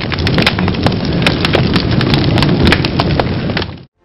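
Fire sound effect: a steady low rumble thick with crackling and sharp pops, cutting off abruptly just before the end.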